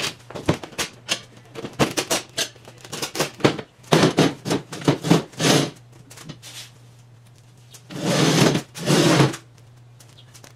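A fold-in-half plastic folding table being opened out on its metal legs: a quick run of clacks and knocks, then louder knocks as the top and legs are set in place. Near the end come two longer scraping noises, about half a second each.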